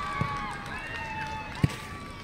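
Children's voices calling out during a youth football match, with long drawn-out shouts, and a soft knock just after the start. A sharp thump about a second and a half in stands out as the loudest sound: a football being kicked.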